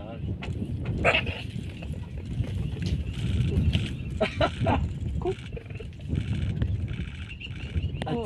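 Onlookers' voices and a short laugh over a steady low rumble.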